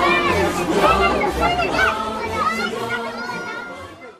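A crowd of children shouting and calling out over background music with a low beat, the whole fading out near the end.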